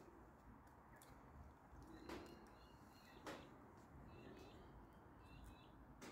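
Near silence: quiet room tone with two faint clicks, about two and three seconds in, and a few faint high chirps.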